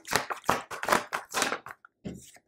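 A deck of tarot cards being shuffled by hand: a quick, irregular run of crisp card flicks and taps that stops just before the end.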